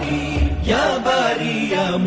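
A solo voice chanting the names of Allah as a melodic devotional recitation, over a musical backing.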